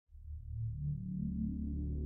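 Low ambient background music: a deep, steady drone that fades in at the start, with soft swelling low notes.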